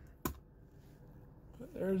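A single sharp snap about a quarter second in, a pop rivet's mandrel breaking off in a hand riveter as the rivet sets, then near quiet.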